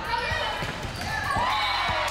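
Volleyball rally on a hardwood gym court: the ball knocks sharply off hands and the floor several times, and players' voices call out as the ball drops.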